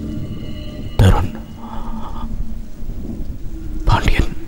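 Steady rain with a low hum beneath it, and a sudden loud thunderclap about a second in.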